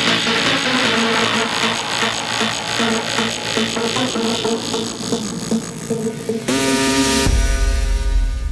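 Hard dance music: a busy, rhythmic synth section with no deep bass. About six and a half seconds in comes a short rising noise sweep, and then a deep sustained bass comes in.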